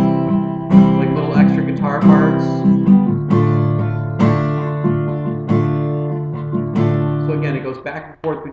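Acoustic guitar strummed in a repeating pattern, moving between C and D minor chords with a chord change about three seconds in; the chords ring between strokes.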